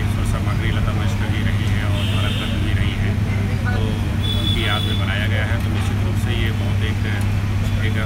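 A man talking in Hindi into an interview microphone over a steady low hum.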